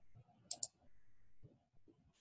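A computer mouse button clicking: two sharp clicks in quick succession about half a second in, as radio buttons on an on-screen form are selected.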